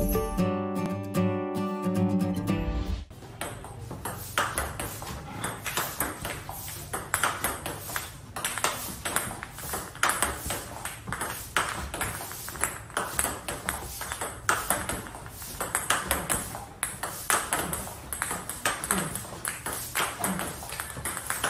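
A short music jingle for about the first three seconds, then a table tennis rally: the ball clicking off the rubber of the paddles and bouncing on the table, a few hits a second. The player is practising forehand loops against backspin balls.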